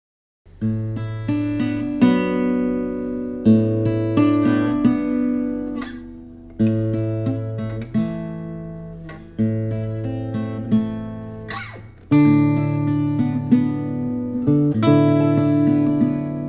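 Acoustic guitar strumming chords, starting from silence about half a second in; each chord is struck every second or two and left to ring out before the next.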